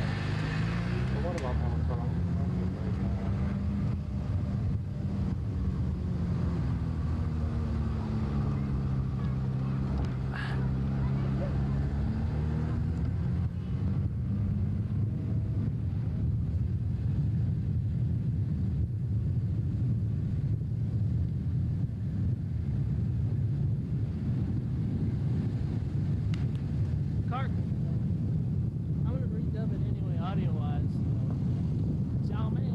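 A vehicle's engine running as it drives. Its note rises and falls over the first half, then settles into a steady low drone with road noise.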